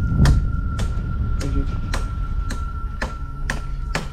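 Footsteps on dry ground, about two steps a second, over a steady thin high-pitched tone.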